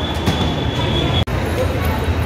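Busy crowd hubbub with a low rumble inside a temple. A single high steady ringing tone runs for about the first second, then the sound cuts off abruptly for an instant and similar crowd noise carries on.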